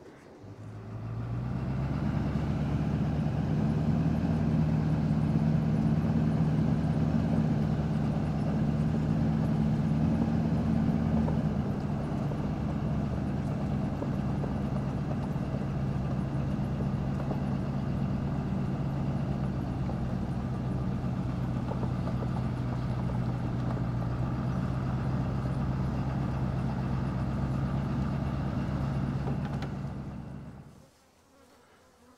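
Truck engine running steadily, heard from inside the cab. Its note settles a little lower about a third of the way in.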